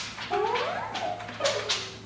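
Contemporary chamber ensemble of clarinet, cello, harp and percussion playing: sliding pitches that rise and fall, broken by sharp struck accents at the start and again about a second and a half in.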